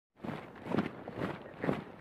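Footsteps, four soft steps about half a second apart.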